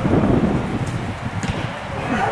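Wind buffeting the camera microphone: an uneven low rumble, gusting strongest in the first half second.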